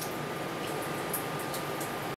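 Steady room background noise: a fan-like hiss with a thin, steady high whine and a few faint ticks.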